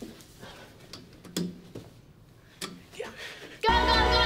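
Background music breaks off and leaves a quiet stretch with a few short knocks and thumps, about four, unevenly spaced, like footsteps and a crutch moving through a corridor. The music comes back in loudly near the end.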